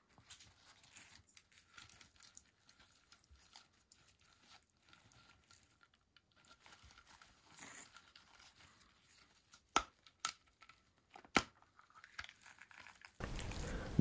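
Faint crinkling and rustling of the thin plastic sheeting of folded LED wings being handled, then a few short sharp clicks as the plastic battery box's lid is opened.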